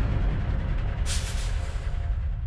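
Sound effect of a heavy truck: a deep engine rumble with a sharp air-brake hiss about a second in.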